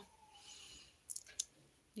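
A short soft hiss, then a few faint clicks close together a little over a second in.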